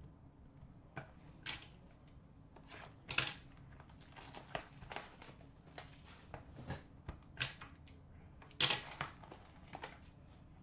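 Faint handling noises of trading cards and a cardboard card box: scattered clicks, taps and rustles as cards are set down on a glass counter and the box is picked up and opened, loudest about three seconds in and again near the end.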